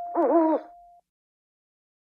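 An owl hoot sound effect: one short call that dips and rises in pitch, over the held last note of the intro music, which cuts off about a second in.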